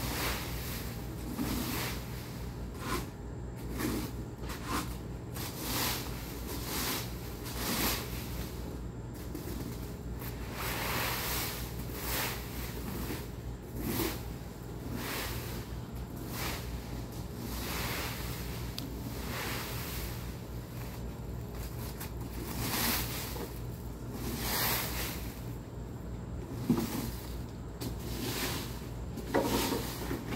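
Leaf rake dragged through a bed of dry fallen leaves in repeated rustling, scraping strokes, roughly one a second, over a steady low hum.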